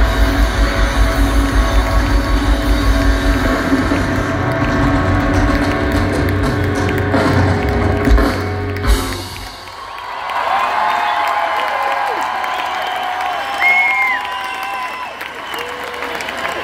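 Live rock band playing the loud closing bars of a song over a fast driving beat, ending on final hits about eight and nine seconds in. The festival crowd then cheers and shouts, with a whistle near the end.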